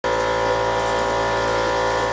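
A steady machine hum, several even tones held without change over a background of noise.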